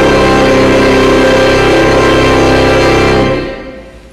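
Hymn sung with organ accompaniment: a sustained chord that is released a little over three seconds in and dies away in the church's reverberation.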